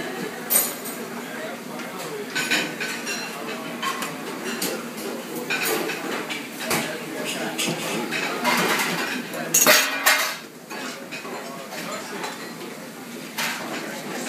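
Metal bowls and utensils clinking and clattering in a busy kitchen, with short spurts of hiss from a whipped-cream siphon dispensing pomegranate foam. The loudest spurt comes a little before ten seconds in.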